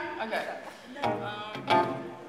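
A woman's voice at a microphone, mixed with an acoustic guitar, which is loudest about a second in and near the end.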